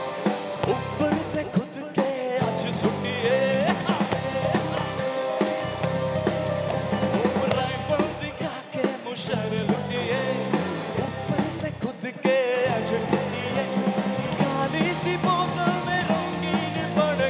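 Live rock band playing: drum kit, bass guitar and electric guitar, with a singer over the top.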